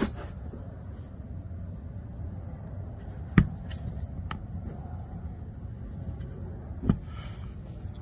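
Razor blade working through a plastic bumper cover, giving a few sharp clicks, the loudest about three and a half seconds in and another near the end. Behind it, crickets keep up a steady, high, pulsing trill.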